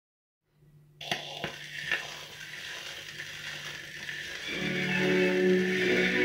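Stylus running in the lead-in groove of a spinning 78 rpm shellac record: surface hiss starting about a second in, with a few sharp clicks. Near the end an orchestra comes in with a waltz, heard through the record's crackle.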